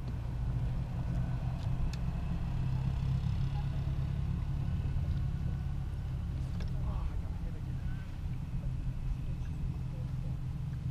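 Boat motor running steadily: a low, even hum.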